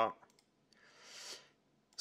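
Faint computer mouse clicks as a preset is selected on screen, followed by a soft hiss of about a second that swells and fades.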